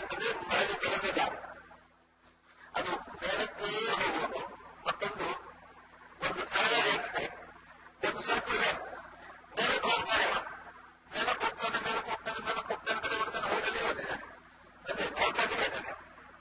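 A man's voice speaking in phrases of a second or two, with short pauses between them.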